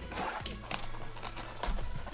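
Quiet background music, with several light taps and clicks from a shrink-wrapped cardboard box of trading cards being handled and its plastic wrap opened.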